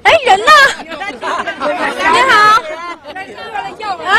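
Speech: several people talking, with crowd chatter around them.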